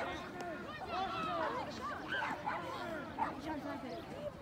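Distant, indistinct voices of several people calling and talking at once across an open rugby field, with no single loud sound.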